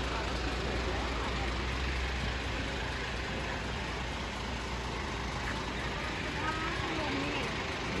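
Diesel engine of a Hino 500 concrete mixer truck idling steadily, a low rumble that grows weaker after about five seconds.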